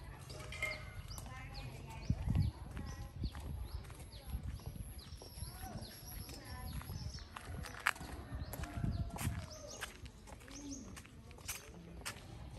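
Footsteps on a concrete path, with birds chirping in short falling calls and a knock about two seconds in.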